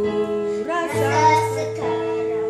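Music: an Indonesian pop song playing, a high singing voice over sustained keyboard chords, the voice coming in about half a second in.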